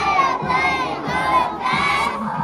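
A large group of young children shouting out a line loudly together in unison, in three phrases with short breaks.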